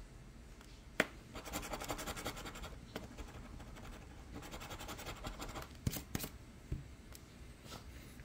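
A coin scratching the coating off a lottery scratch-off ticket, in two runs of quick back-and-forth strokes, with a sharp tap about a second in and a few clicks near the end.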